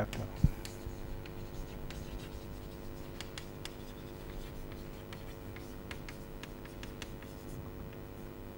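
Chalk writing on a blackboard: a string of faint scratches and taps as the letters are stroked out, over a steady faint hum.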